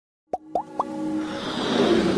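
Intro sound effects for an animated logo: three quick rising pops about a quarter of a second apart, then a swelling rush of noise and music building up.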